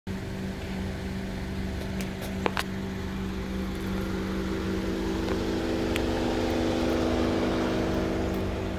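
A 2020 Toyota Camry SE idling steadily: a low rumble with an even hum, a little louder in the second half. Two short sharp clicks come about two and a half seconds in.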